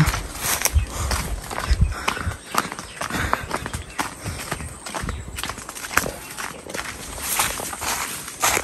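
Footsteps of someone walking along a dirt footpath: a run of soft, irregularly spaced steps, with a few heavier low thuds in the first couple of seconds.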